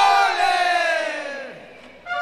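A group of voices letting out one long shout that slides down in pitch and fades away over about two seconds, between stretches of brass-led music.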